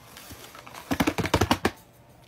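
A quick run of about a dozen sharp taps, lasting under a second, starting about a second in.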